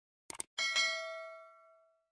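A short click, then a single bell-like metallic ding struck once about half a second in, ringing out with a clear tone and fading away over about a second and a half.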